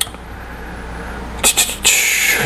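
A single sharp click, then a low hiss and a few short, loud scraping noises near the end.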